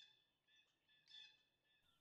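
Near silence, with faint high-pitched bird chirps.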